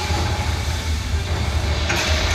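Film soundtrack of a ship flooding, played loud through cinema speakers: a steady low rumble under a rushing-water hiss.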